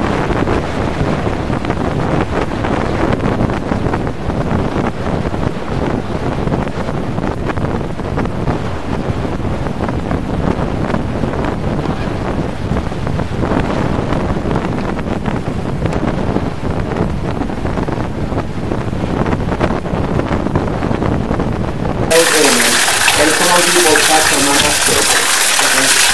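Wind buffeting the microphone: a steady, deep rumble. About 22 seconds in it cuts abruptly to water pouring from a stone fountain spout: a louder, bright, steady splashing.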